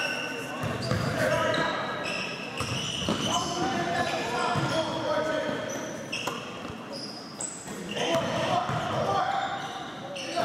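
Basketball game sounds in an echoing gym: many short, high sneaker squeaks on the court floor and a basketball bouncing, over a steady background of players' and spectators' voices.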